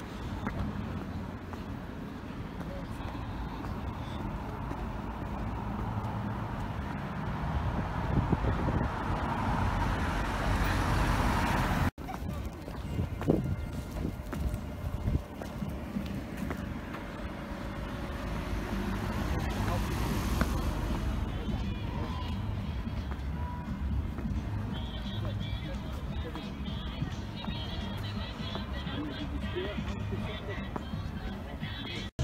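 Street ambience recorded while walking outdoors: wind rumbling on the microphone over road traffic, with a vehicle passing about two-thirds of the way through. The sound cuts out for an instant near the middle, followed by a few sharp knocks.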